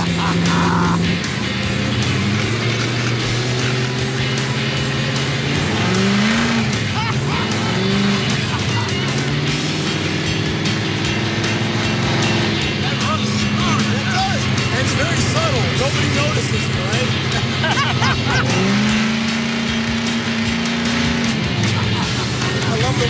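The twin supercharged engines of a 1927 Model T roadster hot rod running as the car drives. Their pitch rises and falls with the throttle about six seconds in and climbs again near the end. Background music plays over it.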